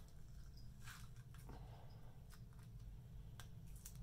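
Faint clicks and crackles of adhesive ECG electrode pads being peeled off the skin and handled, a few short sounds over a low room hum.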